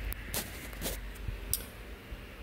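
Quiet low room hum with a few soft clicks and knocks from a phone being handled.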